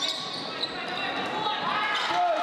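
Live court sound of a women's basketball game in a sports hall: a ball bouncing, with voices in the hall behind it.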